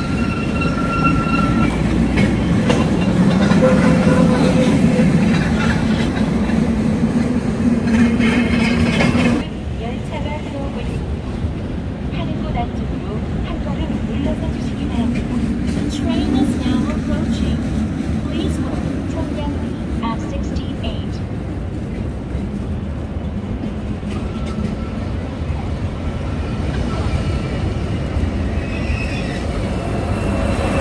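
Outdoor railway platform noise with a steady low rumble that drops off abruptly about nine seconds in. A passenger train draws into the platform near the end, and the sound grows louder as it arrives.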